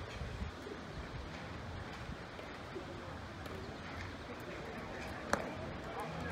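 Open-air ambience at a baseball field: a steady low background with faint, distant voices, and one sharp click a little after five seconds in.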